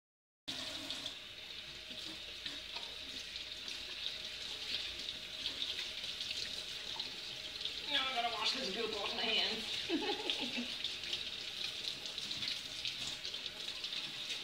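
Kitchen faucet running into a stainless steel sink, with water splashing over hands as soap lather is rinsed off. The water starts about half a second in and runs steadily.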